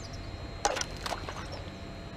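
Two short, sharp clicks about half a second apart from a fishing rod and reel handled as a lure is cast.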